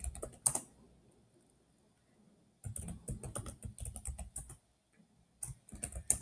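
Typing on a computer keyboard: a few keystrokes at the start, a gap of about two seconds, then a quick run of keystrokes and a few more just before the end.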